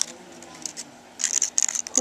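Small paper craft pieces handled between the fingers: a short tap at the start, then light paper rustling and rubbing in the second half.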